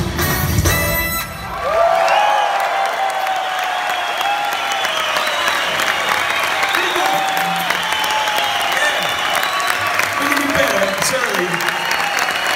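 A rock band playing live ends its song about a second in, and the audience breaks into sustained applause and cheering, with shouts rising above the clapping.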